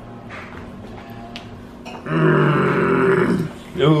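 A toddler making a loud, held vocal noise at one steady pitch, starting about halfway through and lasting about a second and a half.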